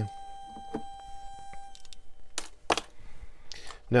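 A 555-timer astable multivibrator static detector beeping a steady high tone through its small speaker, cut off about a third of the way in as its 9 V battery is disconnected. A couple of sharp clicks of the battery and clip being handled follow.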